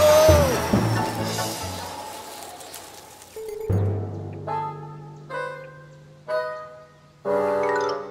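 Cartoon rocket whoosh sound effect, with a gliding tone, that fades away over the first few seconds. Then background music plays a run of about five short held chords, one after another.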